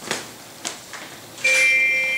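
Two faint clicks, then about one and a half seconds in a single note struck on a glockenspiel, ringing on.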